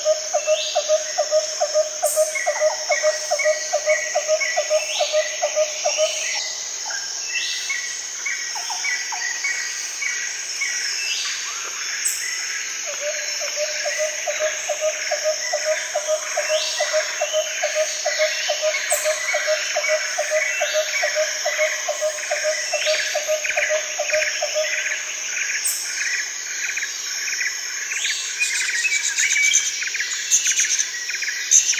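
Birds calling over a steady, high-pitched insect drone. One bird repeats a low note several times a second in two long runs, the first at the start and the second through the middle, while another chirps in quick series of higher notes.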